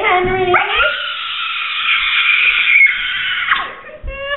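A long, high-pitched howl that rises in pitch at the start, holds for about three seconds and breaks off near the end.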